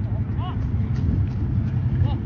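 Outdoor field ambience: a steady low rumble with a short call from a voice about half a second in and a few faint clicks.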